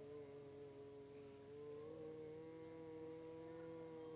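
A quiet, steadily held chord on a keyboard pad, with a slight shift in the notes about two seconds in.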